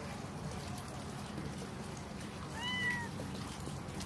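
A black-and-white cat gives one short meow about two and a half seconds in; the pitch rises slightly and then falls. A faint steady hiss runs underneath.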